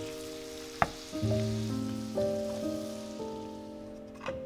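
Ground beef and onions sizzling as they fry in a nonstick pan, stirred with a wooden spatula, with one sharp tap of the spatula about a second in; the sizzle fades out near the end. Soft background music with sustained notes plays over it.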